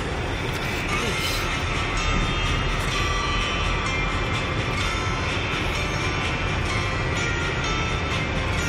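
Music playing from a car radio inside the cabin of a moving car, over a steady low rumble of engine and tyres.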